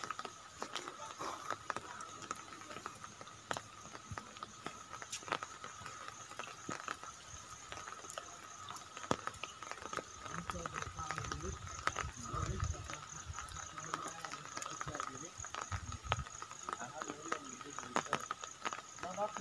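Outdoor ambience: faint background voices under a steady high-pitched drone, with scattered short clicks throughout. A low rumble comes in about ten seconds in and again near the end.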